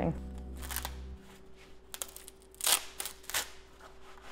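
Birch bark crackling and rustling in about four short crackles as a sheet is handled and split into layers. A faint held music chord fades out in the first second.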